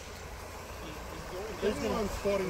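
A low steady rumble, with a man's voice starting faintly about one and a half seconds in.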